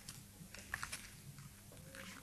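Faint clicks and light handling noise from gloved hands working a small object, with a cluster of clicks about three-quarters of a second in, over a low steady hum.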